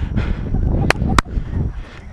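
Wind buffeting and rubbing on a body-worn action camera's microphone as the wearer moves during a play. Two sharp knocks come about a third of a second apart, a little before the middle.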